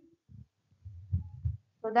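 A short pause holding a few faint low thuds and a low rumble, then a woman's voice begins with 'So' near the end.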